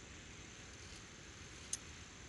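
Faint steady background hiss with one short, sharp, high-pitched click near the end.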